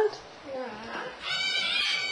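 A dog whining once, a single high-pitched whine of under a second near the end, from being teased.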